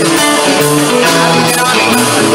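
Live band music led by guitars, with sustained played notes over a steady bass line.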